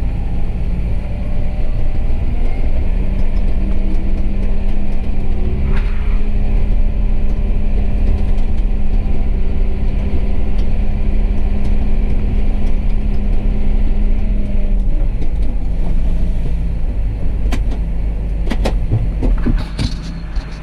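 John Deere 6170R tractor's six-cylinder diesel engine and drivetrain heard from inside the cab while driving, running steadily at a constant speed. A steady hum holds from about three seconds in until about fifteen seconds in, and a few light clicks come near the end.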